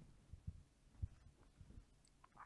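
Near silence: room tone, with two or three faint, short low thumps about half a second apart.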